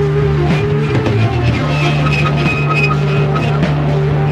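Heavy psychedelic rock playing: a sustained low note under held and shifting higher notes, with drum hits.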